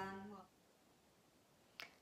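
Near silence: a voice trails off in the first half second, then room tone, broken by one short, sharp click just before speech begins again.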